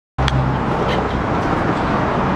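Steady outdoor traffic and vehicle engine noise, with two short clicks in the first second.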